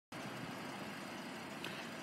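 Faint, steady outdoor background noise of a car lot with traffic hum.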